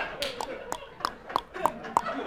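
A man making a run of short mouth-pop sound effects, about three a second, each a sharp click with a brief pitched note.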